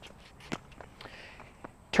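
Faint footsteps and shoe scuffs on a hard tennis court, with a light click about half a second in and another near the end.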